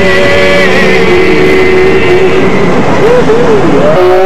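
Loud, steady running noise of a New York subway car, close to the microphone. Over it, voices hold a long note left over from the song and end in a few wavering pitch bends near the end.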